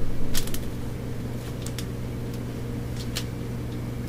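Steady low electrical hum, with a few faint clicks and crinkles from fingers pressing modeling clay on a plastic sheet.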